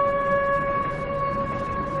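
A train horn sounding one long steady blast, fading slightly, over the low rumble of the train running.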